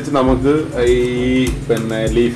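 Background song: a voice singing over a steady bass beat, holding one note for about a second in the middle.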